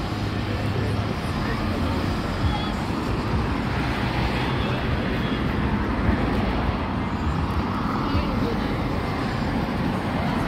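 Busy city street ambience: steady traffic noise with people talking in the background.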